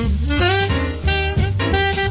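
Small jazz group from a 1958 record: an alto saxophone plays a quick line of notes over walking bass and drums.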